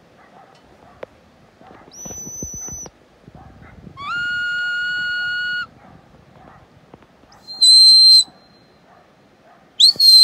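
A sheepdog handler's whistled commands to a working dog: four separate whistles. First a short high steady note, then a longer, lower held note that slides up at its start, then a short warbling high note, and near the end a note that rises and then falls away.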